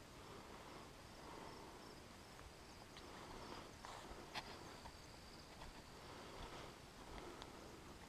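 Near silence: faint outdoor garden ambience with a faint, steady high insect hum and a few soft ticks.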